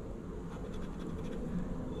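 The edge of a poker chip scraping the coating off a scratch-off lottery ticket: a faint, dry scratching.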